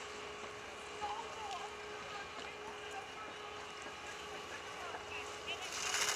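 Ski-slope ambience with a steady faint hum and faint voices. Just before the end, a giant slalom racer's skis carve past close by with a loud hiss of snow.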